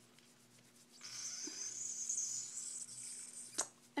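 Angled makeup brush brushing powder bronzer: a soft, high hiss that starts about a second in and lasts a couple of seconds, followed by a single sharp click near the end.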